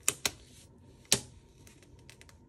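A paper sticker strip being handled and pressed onto a planner page: three sharp clicks, two close together at the start and a louder one about a second in, with a faint papery rustle.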